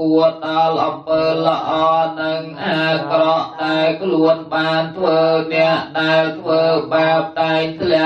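Male Buddhist chanting of Pali verses, recited on one steady pitch in short, even syllables of about two to three a second.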